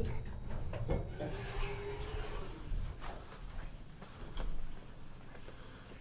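ThyssenKrupp elevator doors sliding open, with a faint whine from the door operator that drops slightly in pitch over about two seconds, followed by low rumbling handling noise and soft footsteps.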